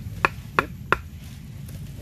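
Three sharp knocks about a third of a second apart, as a freshly carved wooden tent stake is knocked into the soil.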